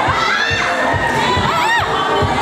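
A crowd of onlookers shouting and cheering together, with one high shrill call rising and falling about three-quarters of the way in.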